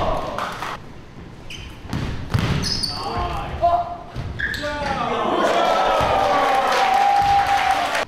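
Basketball bouncing on a hardwood gym floor, then spectators cheering and shouting from about halfway through, with one long held call near the end, as a basket is scored.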